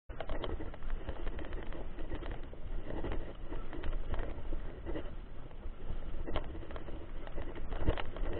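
Mountain bike ridden over a rough dirt road, picked up by a handlebar-mounted camera: a steady rumble of tyres and wind with frequent rattling clicks and knocks.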